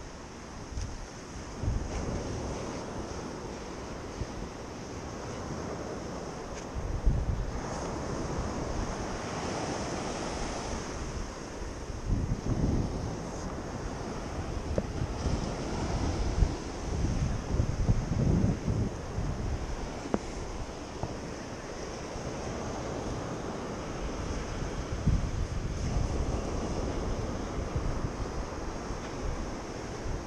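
Surf washing up the beach, with wind rumbling on the microphone in uneven gusts.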